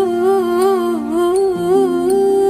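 Song playback: a wordless vocal note held through, wavering with vibrato, over sustained accompaniment chords.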